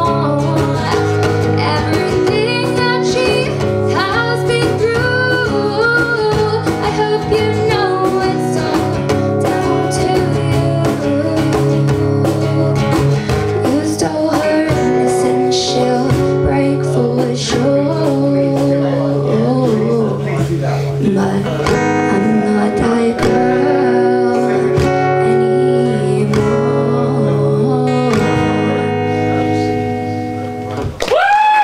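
A woman singing to her own acoustic guitar accompaniment in a live performance, the guitar carrying steadily beneath the vocal line.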